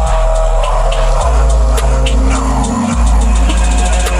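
Dark trap instrumental: a deep sub-bass line that breaks off briefly near the end, rapid hi-hat ticks and a sustained synth pad.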